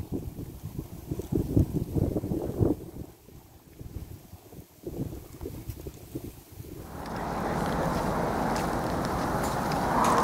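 Wind buffeting the microphone in irregular low gusts. About seven seconds in this gives way to a steadier hiss.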